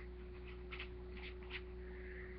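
Faint paintbrush strokes swishing over tissue paper, a few soft strokes about a second in, over a steady low hum.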